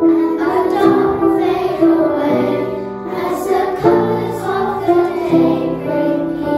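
Children's choir singing a slow song, holding long notes that change pitch every second or so.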